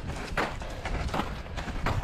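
Footsteps of a ski mountaineer walking uphill, a step roughly every two-thirds of a second, over a low steady rumble.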